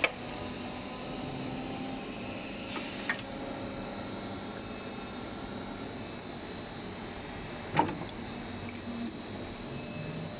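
Blow molding machine making plastic sea balls (ball-pit balls), running with a steady mechanical hum. There are light clicks around three seconds in and a single sharp clack nearly eight seconds in, which is the loudest sound.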